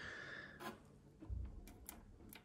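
Faint handling sounds: a few light clicks and a soft low bump as multimeter test probes are held against sealed battery terminals, with a faint breath at the start.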